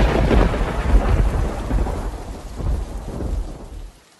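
Thunder with rain: a loud low rumble that swells several times and slowly fades over a hiss of rain, then cuts off suddenly at the end.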